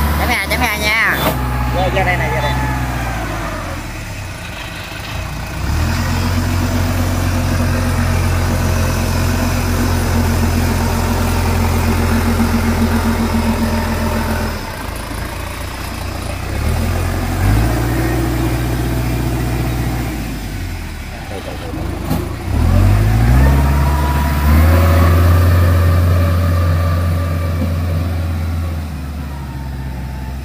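Engine of a small tracked rice-sack carrier running under load, its speed stepping up and down several times as it drives along.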